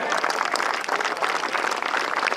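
Golf gallery applauding a holed birdie putt: dense, steady clapping from many spectators.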